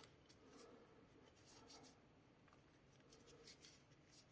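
Near silence, with a few faint rustles of a crochet hook drawing thick tape yarn through stiff slip stitches.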